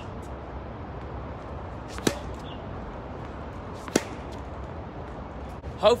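A tennis racket striking the ball twice with sharp pops, about two seconds in and again near four seconds, on low side-spin forehand "hook" shots. Fainter ticks of the ball bouncing on the hard court come in between, over a steady background hum.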